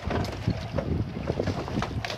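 Wind buffeting the microphone on an offshore fishing boat, in gusts over the low rumble of the boat on the water.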